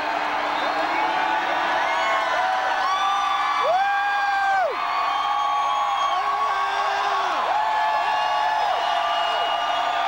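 Rock concert crowd cheering and whooping: many overlapping long held 'woo' cries over a steady roar of voices, heard from among the fans.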